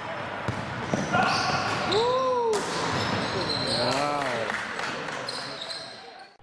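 Basketball game in a gymnasium: a ball bouncing on the court and players' voices over the gym's din, with two short wavering calls in the middle. The sound fades out near the end.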